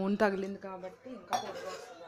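A steel ladle clinks sharply against a metal kadai once, about a second and a half in, followed by the soft rustle of dry broken-rice rava grains in the pan.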